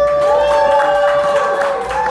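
Small audience applauding and cheering at the end of a song, with steady clapping and a couple of long held whoops.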